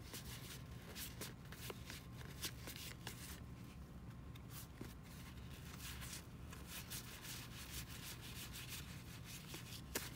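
Cardboard baseball cards being thumbed through by hand: a fairly faint, uneven run of quick flicks and rubs as card after card slides off the stack.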